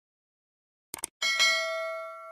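Subscribe-button sound effect: a quick double click about a second in, then a bright bell ding that rings on and slowly fades.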